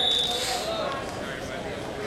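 A cough at the start, over faint background voices in a gymnasium. A thin, steady high-pitched tone runs alongside for about the first second.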